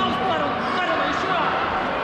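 Background voices in a large sports hall: fainter talk and calls over the hall's general noise, with no close voice.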